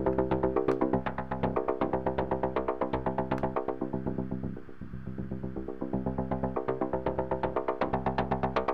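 Sequenced synthesizer line from a Reaktor Blocks modular patch, oscillators run through a Monark filter with FM modulation: a fast, even run of short repeating notes. The tone dulls and quietens around the middle as the filter closes down, then opens back up brighter near the end.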